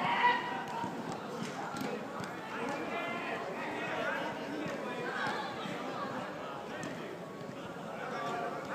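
Players' voices calling and shouting to one another across a futsal pitch, with running footsteps on the artificial turf. The loudest call comes just after the start.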